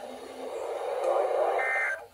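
Midland weather radio's speaker hissing with receiver noise. About a second and a half in comes a brief burst of SAME digital data tones, the end-of-message code that closes the NOAA Weather Radio weekly test.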